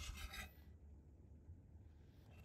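Motorised rotating cat toy turning on its plastic turntable: a brief gritty, scraping whirr lasting about half a second at the start, then faint.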